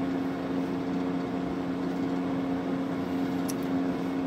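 Steady machine hum holding one pitch, like a fan or appliance running, with a single faint click about three and a half seconds in.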